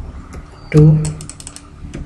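Typing on a computer keyboard: a few separate keystrokes, then a quick run of clicks about a second in.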